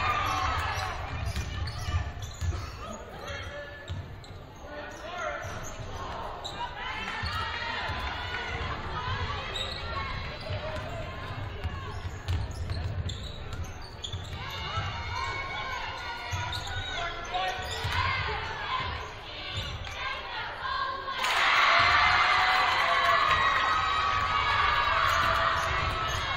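A basketball being dribbled on a hardwood gym floor, with repeated dull thuds, under players' and spectators' voices echoing in the gym. About five seconds before the end the crowd noise rises sharply and stays loud.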